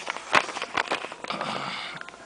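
Handling noise from a handheld camera being picked up and positioned: several short clicks and knocks with rubbing and rustling.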